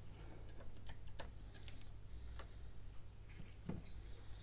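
Light, irregular clicks and taps from small plastic and metal phone parts as gloved hands handle a stripped smartphone frame during repair, over a steady low hum.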